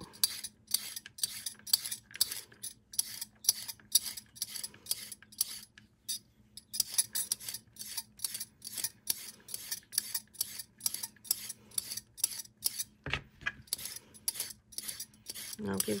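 Metal vegetable peeler scraping down a raw carrot in quick repeated strokes, about two to three a second, stripping off the peel, with a short pause about six seconds in. A low thump about thirteen seconds in.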